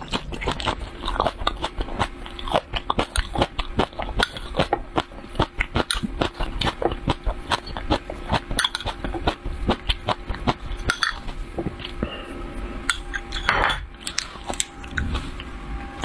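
Close-miked chewing and biting of chili peppers, a dense run of crisp crunches and wet mouth clicks. One louder, longer mouth sound comes near the end.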